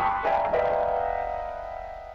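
Grand piano: a chord struck, then a lower chord a moment later, both left to ring and slowly fade.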